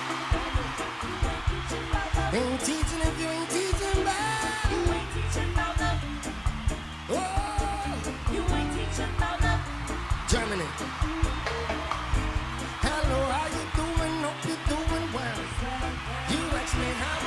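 Live reggae band playing a steady groove over a PA, with regular drum hits and a heavy bass line; a voice slides in briefly in places.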